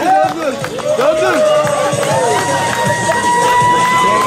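A street crowd of voices calling and shouting over one another. About halfway through, a single long, steady high note from a musical instrument begins and holds as music starts up.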